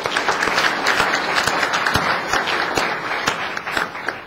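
An audience applauding, a dense patter of many hands clapping that eases slightly near the end.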